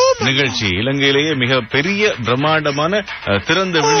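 Speech only: a man talking continuously in Tamil.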